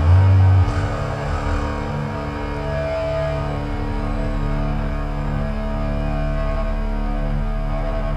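Low, steady droning tones held through the stage amplifiers and PA at a thrash metal show, with no drums playing, after a short loud low thump at the start.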